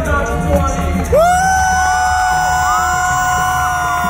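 Hand drums and drum kit playing, then about a second in the drumming stops and a voice holds one long high note. Shorter whoops from the audience rise and fall around it.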